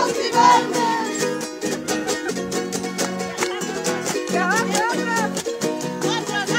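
Bolivian carnival coplas: a small, bright string instrument strummed fast and steadily, with high-pitched singing at the start and again about four seconds in.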